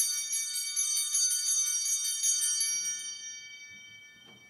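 Altar bells (a cluster of small handbells) shaken rapidly, then left ringing and dying away near the end. They mark the elevation of the chalice at the consecration of the Mass.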